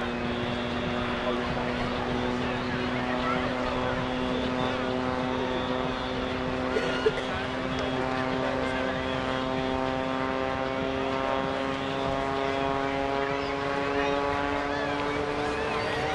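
Jack Link's Screaming Sasquatch, a jet-assisted Taperwing Waco biplane, flying aerobatics overhead: a steady engine and propeller drone that rises slowly in pitch over the last few seconds as it dives. Two short clicks sound about seven seconds in.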